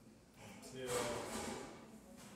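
A man speaking, with speech starting about half a second in.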